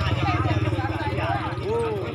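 Men's voices talking among a small gathered group, over a steady low rumble like an idling engine.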